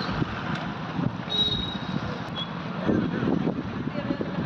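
Street traffic noise: vehicles passing on a wet road, with a short high beep about a second and a half in.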